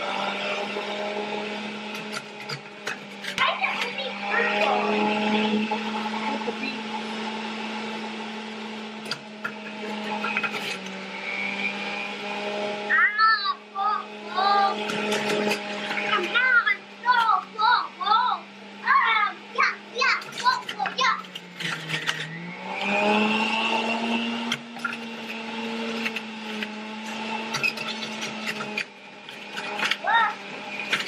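Breville Fountain Duo centrifugal juicer motor running with a steady hum while produce is pushed down the feed chute. About two-thirds of the way through the hum sags in pitch for a moment under load, then recovers.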